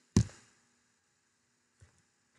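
A single short knock just after the start, fading within about half a second, then near silence with a faint tick near the end.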